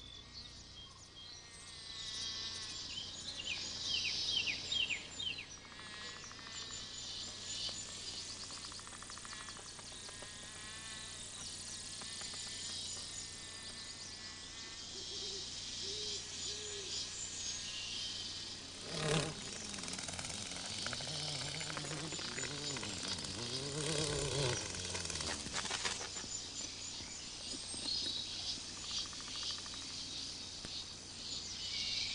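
Sound-effects nature ambience: crickets and other insects chirping, with bird calls. In the second half a low buzzing swoops up and down in pitch, like a flying insect passing close by.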